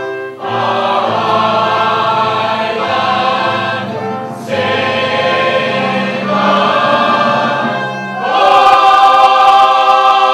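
A musical's company singing together in chorus, in long held phrases with brief breaths between them, growing louder about eight and a half seconds in.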